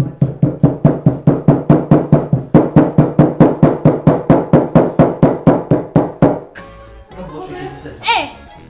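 Rapid, evenly spaced pounding blows, about four to five a second, that stop abruptly about six seconds in.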